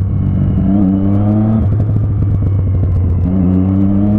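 Motorcycle engine pulling through traffic: its pitch climbs slowly, drops away about one and a half seconds in, and climbs again from a little after three seconds.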